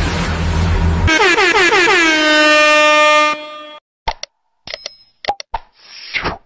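Electronic intro music, cut off about a second in by a loud horn-like sound effect: a buzzy tone that slides down in pitch, then holds and fades out a couple of seconds later. A few short pops and clicks follow near the end.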